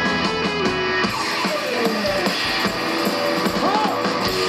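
Live rock band playing: electric guitars over a drum kit. About a second in, the low bass end drops away, leaving mainly guitar lines with bends and cymbals.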